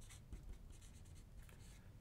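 Faint scratching of a marker writing a short formula on a whiteboard.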